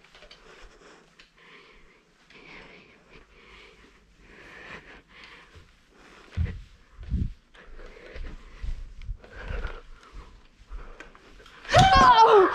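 A person breathing hard close to the microphone in short, regular breaths. From about six seconds in come several heavy thuds of footsteps.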